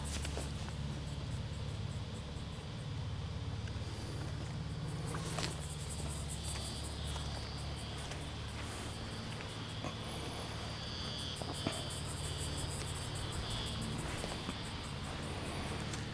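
Insects chirping in a fast, steady train of high-pitched pulses, over a low, even background hum.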